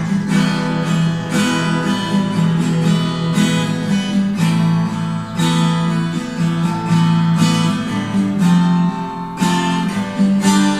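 Nylon-string classical guitar strummed, an instrumental passage of chords with no singing.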